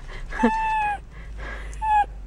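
A dachshund whining: one high cry about half a second long that falls slightly in pitch, then a second short cry near the end.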